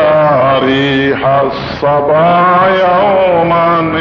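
Melodic devotional chanting of durood, blessings on the Prophet, sung in long held notes with gliding pitch changes.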